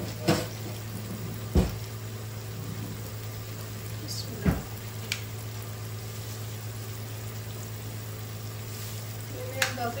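Tomatoes, onions and spices sizzling steadily in a frying pan, over a steady low hum, with a few sharp knocks, the loudest about a second and a half in and another around four and a half seconds in.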